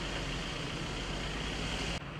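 Steady outdoor background noise: a low mechanical hum under a constant hiss, with no distinct events.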